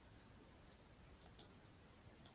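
Near silence with two quick, faint mouse clicks close together about a second in.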